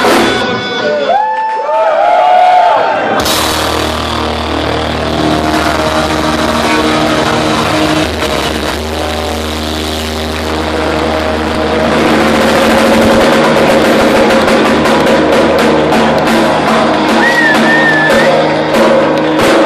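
Heavy metal band playing live: distorted electric guitars, bass and drums. From about three seconds in the band holds long sustained notes, growing fuller and louder in the second half.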